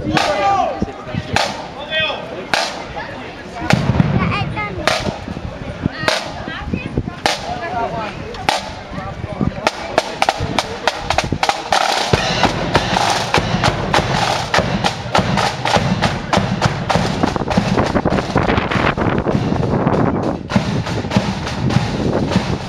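Marching flute band's drums: a single drum beat tapping out the step a little more than once a second, then from about ten seconds in the side drums and bass drum break into a fast, dense drum cadence.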